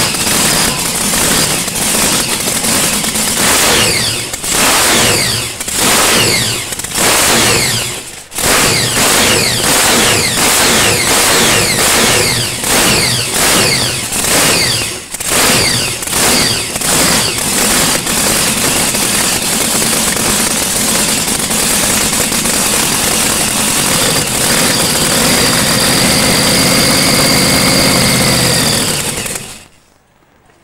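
Front-engine dragster's V8 running on open headers, blipped over and over so the revs rise and fall about once a second. It then runs steadily for about ten seconds and cuts off suddenly just before the end as it is shut down.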